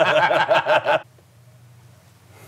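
A man laughing hard in a quick, rhythmic run of bursts that stops about a second in.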